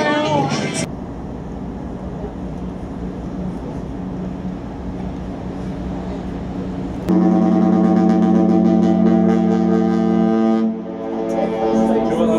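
A ship's horn sounding one long, steady blast of about three and a half seconds, starting suddenly about seven seconds in over harbour and wind noise. It is loud, with a chord of notes whose lowest drops out just before the blast ends.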